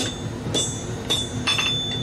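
Blacksmith's hand hammer striking hot iron on an anvil, about two blows a second, each leaving a bright metallic ring. Near the end, two blows come close together.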